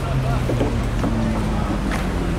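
Indistinct voices over a steady low hum that slowly drops in pitch, with a background of outdoor noise.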